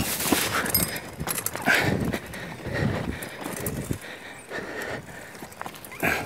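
Mountain bike rolling down a rough, rocky dirt trail: tyres grinding over stones and loose ground, with irregular knocks and rattles as the bike jolts over rocks and roots.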